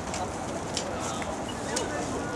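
Steady outdoor background noise with faint distant voices and a few short, sharp clicks.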